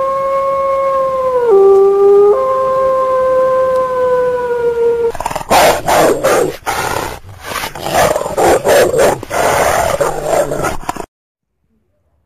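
A wolf howl sound effect: one long call that dips in pitch about one and a half seconds in, rises again and slowly falls, ending about five seconds in. Harsh growling in rough bursts follows and stops abruptly about a second before the end.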